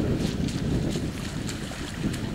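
Wind buffeting the microphone with a steady low rumble, and a few faint footfalls of a trail runner coming down a muddy bank toward a stream crossing.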